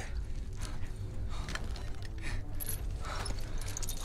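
Metal chain clinking with scattered light metallic clicks, over a steady low rumble.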